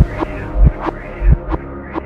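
Instrumental hip-hop beat with no vocals: deep kick-drum thumps about every two-thirds of a second, alternating with sharp snare or clap hits, over sustained low synth and bass tones.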